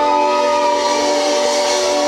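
Live indie rock band holding a sustained chord of synth and guitar as the song winds down. Drums and bass drop out, leaving several steady tones with a hiss over them.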